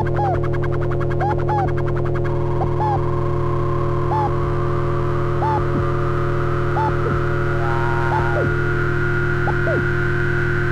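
Homemade patch-cord analog synthesizer droning on steady low tones, with short up-and-down pitch chirps repeating about every second and a half. A fast buzzy rattle sits over it for the first two seconds, and a higher tone rises slowly through the second half.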